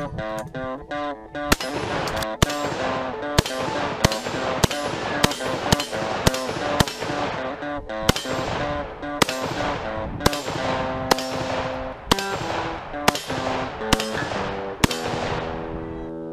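An AK-pattern rifle fired semi-automatically in a long string of about twenty shots, some half a second apart and some a second apart, each crack with a short ringing tail. Background music plays under the shots.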